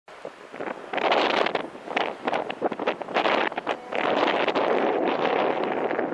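Wind buffeting the microphone in irregular gusts, the strongest about a second in and again from about four seconds on.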